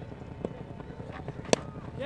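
Cricket bat striking a cork ball: one sharp crack about one and a half seconds in, over faint background noise, with a fainter tap about half a second in.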